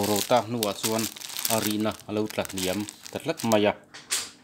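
Talking, with a thin plastic bag of powder crinkling as it is handled and set down on a digital kitchen scale.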